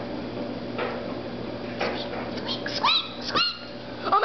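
A child's high voice giving two short puppy-like yips, each rising and falling in pitch, about three seconds in, voicing a stuffed toy dog puppet. Before them come a steady low hum and a few faint handling knocks.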